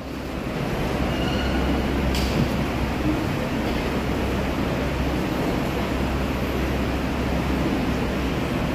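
Steady low hum and room noise from a live church-hall sound system with open microphones, with one click about two seconds in.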